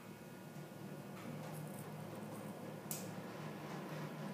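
Elevator car travelling down: a faint, steady low hum from the lift, a little louder from about a second in, with a single short click about three seconds in.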